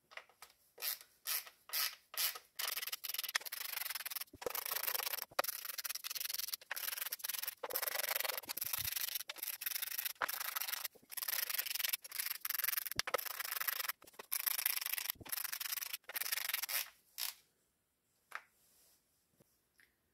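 Hand ratchet clicking in quick stop-start runs as the valve cover cap bolts are wound down onto their studs. The raspy clicking comes in many short bursts and dies away about three seconds before the end.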